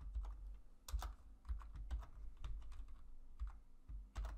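Typing on a computer keyboard: an irregular string of separate keystrokes, some louder than others.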